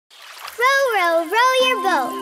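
Water splashing, then a child's voice calling out two long syllables that swoop up and down in pitch; a music track with steady held notes comes in near the end.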